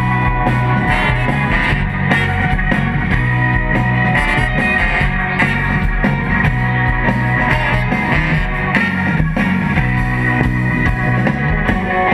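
Live rock band playing an instrumental number, electric guitars and drum kit over a steady beat, amplified through a stage PA.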